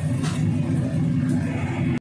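Commercial gas wok burner running with a steady, loud low roar.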